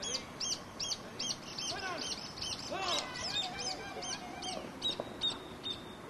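A bird calling over and over in a fast run of short, high, arched notes, about two to three a second, stopping just before the end. Lower, harsher calls come in between about two and four and a half seconds in.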